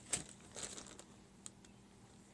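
Clear plastic zip bag crinkling as it is handled and lifted: a sharp crackle just after the start, a few lighter rustles about half a second in, then a small tick.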